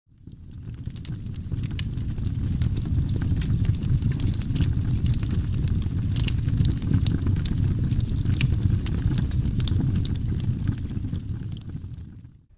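Dense crackling over a steady low rumble, fading in at the start and fading out near the end.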